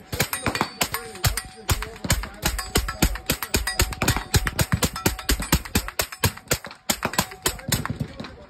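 Rapid gunfire: sharp shots, several a second, with no break.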